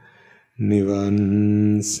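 A Buddhist monk chanting a Sinhala blessing for the attainment of Nibbāna in one steady, drawn-out male voice. It starts about half a second in after a short breath pause, holds one note with slight pitch shifts, and ends on a hissing 's' as he begins 'sæpa læbēvā'.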